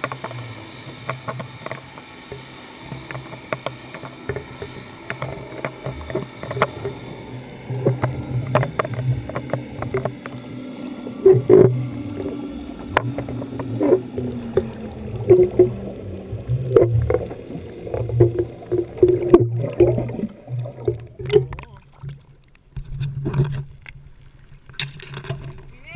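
Underwater sound picked up through a GoPro's sealed housing on a deep-drop rig: a low rumble with irregular knocks and clicks from the rig. About halfway through, a faint tone slides downward in pitch.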